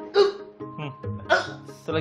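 A person's short, sharp gasps and cries over background music, typical of a patient reacting in pain during a massage.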